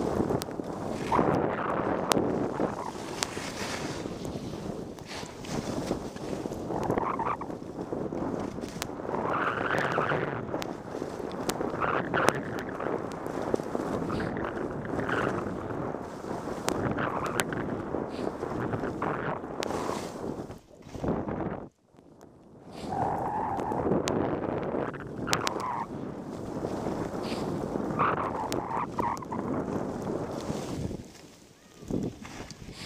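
Skis scraping and hissing over snow on a downhill run, swelling with each turn every second or two, with scattered sharp clicks and wind on the microphone. The sound drops out briefly about two-thirds of the way through.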